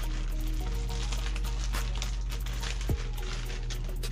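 Clear plastic packaging crinkling and rustling as a small air-suspension compressor is unwrapped by hand, with one sharper click about three seconds in. Steady background music with a low hum runs underneath.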